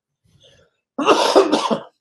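A man's single hard cough, about a second long, starting about a second in. He puts it down to allergy season.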